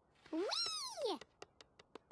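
A single high-pitched, meow-like squeak that rises and then falls in pitch, with faint light ticks, several a second, before and after it.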